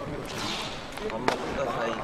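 Faint voices and chatter in a busy room, with one sharp knock a little past a second in.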